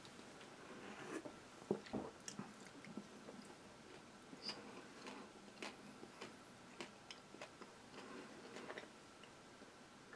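A person quietly chewing a piece of pan de higo, a very firm block of pressed figs and almonds: faint, scattered mouth clicks and small sounds of chewing.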